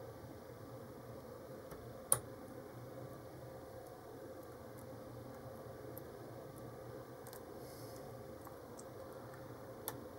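A hook pick and tension tool working the pins of a brass Cocraft 400 pin-tumbler padlock: faint metallic ticks, with one sharp click about two seconds in and two more clicks at the very end, over a steady low hum. The pins give little feedback, "just not talking".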